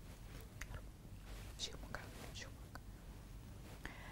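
Very quiet line with a few faint, brief whispery hisses and soft clicks, like someone whispering or breathing near an open microphone.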